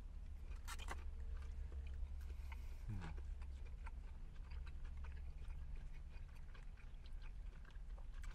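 People chewing and biting into fried chicken nuggets and a chicken sandwich, with scattered small crunches and mouth clicks over a steady low rumble. There is a brief low hum about three seconds in.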